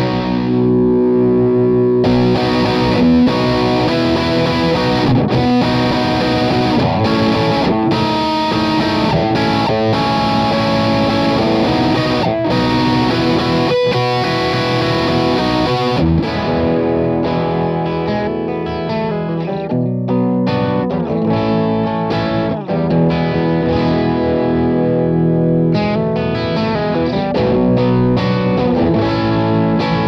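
Electric guitar played through a Friedman BE Mini amp head with a saturated overdrive tone: a continuous run of distorted chords and single notes.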